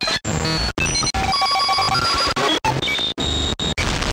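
Glitchy electronic logo sting: harsh static and short high beeping tones, chopped by about eight sudden brief dropouts.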